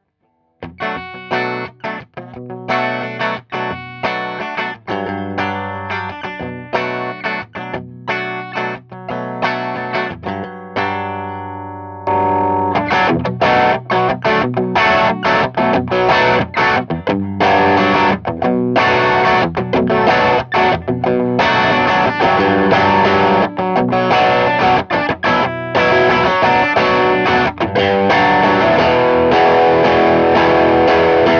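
Electric guitar through an Ulbrick 12AXE overdrive pedal, set to boost the volume with the gain dropped and the tone mostly rolled off, into a clean 50-watt head and a closed-back 2x12 cab loaded with Vintage 30s. Separate picked notes and small chords for about the first twelve seconds, then louder, fuller strummed chords, pushing the amp into a punchy midrange, power-amp kind of overdrive.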